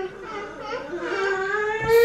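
A toddler whining: one long, drawn-out cry that rises slowly in pitch, from a two-year-old who is tired from waking up early.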